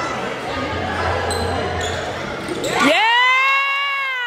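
Spectators chatter in an echoing school gym during a basketball game, with a few short shoe squeaks on the court. About three seconds in, a loud drawn-out shout from the stands rises in pitch, holds, and then begins to fall.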